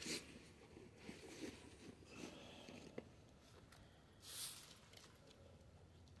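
Near silence broken by faint scuffs and rustles of footsteps on a dirt and stone path, with a soft click about three seconds in and a brief louder rustle just past four seconds.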